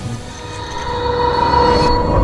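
A sustained high tone swelling louder over the second half, a dramatic soundtrack effect leading into tense music.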